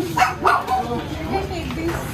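People talking close by, with two loud short sounds about a third of a second apart near the start.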